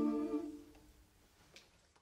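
Five-voice a cappella vocal ensemble holding the final chord of the piece, the steady close-harmony chord releasing about half a second in; then near silence with a faint click near the end.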